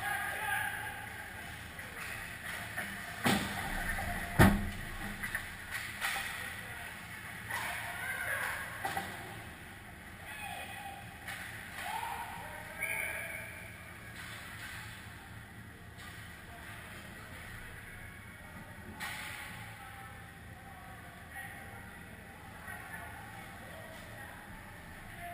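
Ice rink ambience during a hockey game: a steady hum, distant shouts and calls from players, and skating and stick noise. Two sharp knocks about three and four and a half seconds in, the second the loudest sound.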